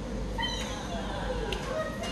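A dog whining: a long high whine starting about half a second in that slides down in pitch, followed by shorter whines near the end.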